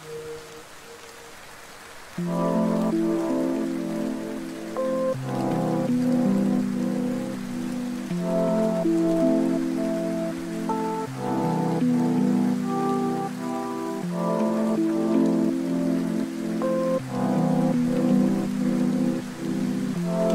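Steady rain falling, heard alone for the first two seconds. A new mellow lo-fi track then comes in over it, with sustained chords and slow melodic notes.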